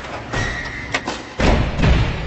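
Cinematic logo-reveal sound effects: a string of deep thuds and hits with music behind them, the heaviest two coming about one and a half seconds in and at the end.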